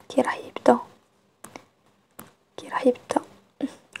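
Speech: a woman speaking French, with a pause in the middle that holds two brief faint clicks.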